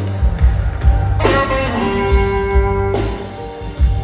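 Live electric blues: a Stratocaster-style electric guitar plays a solo phrase over bass and drums. A note is struck and bent about a second in, then held as one long sustained note, and a new phrase starts near the end.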